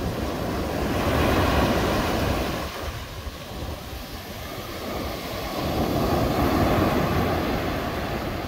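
Ocean surf: waves rushing and washing ashore, swelling louder about a second in and again near the end.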